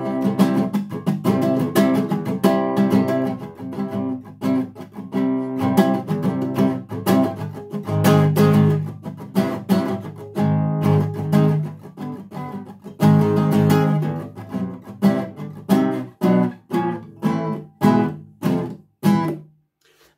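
Classical nylon-string guitar strummed in chords, a dense run of strokes whose loudness swells and drops. Near the end the strokes thin out into separate strums, then stop.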